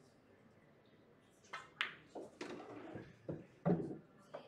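Pool shot: the cue tip strikes the cue ball about a second and a half in, followed by a quick series of clicks and knocks as the balls collide and one drops into a pocket, the loudest knock near the end.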